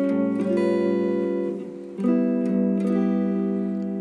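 Electric guitar with a clean tone playing two sustained chords, an A-flat 13 with no fifth and then a G13. The first is struck at the start and decays, and the second comes in about two seconds later and rings on.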